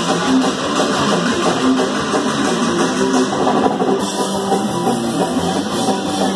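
Punk band playing live: electric guitar, bass and drum kit, at a steady loud level with no break.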